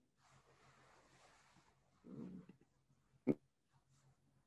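A video-call line breaking up: faint hiss, a soft muffled murmur about halfway through and one short clipped blip near the end, where the connection is dropping out.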